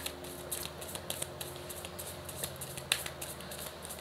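Divination cards being handled and drawn from a deck by hand: a run of faint, irregular card clicks and snaps.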